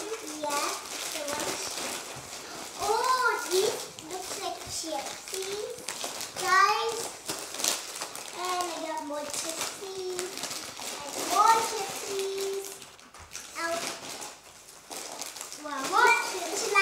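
Children's voices chattering, mostly unintelligible, with the crinkle of plastic candy wrappers and chip bags being handled.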